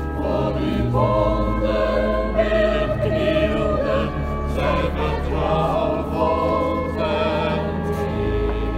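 Church choir singing long, sustained notes, the voices moving slowly from one held pitch to the next.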